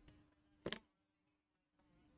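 Near silence: room tone with a faint steady hum and one brief soft sound about two-thirds of a second in.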